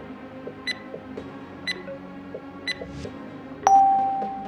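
Workout countdown timer giving a short, high tick once a second, then a longer steady beep near the end that signals the start of the next exercise.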